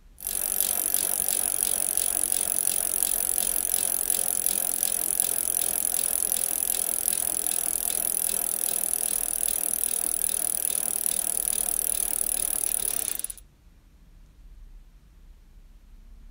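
Metal spoon beating instant coffee, sugar and hot water in a glass, clinking and scraping against the glass in a fast, steady rhythm as the mixture is whipped into a thick coffee syrup. The beating cuts off suddenly near the end.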